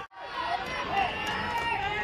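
Ballpark crowd ambience: spectators' chatter and scattered distant voices, starting just after a moment of silence.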